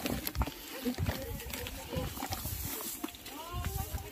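Indistinct voices and short animal calls from dogs trotting along with a group on a trail, over scattered footsteps and clicks.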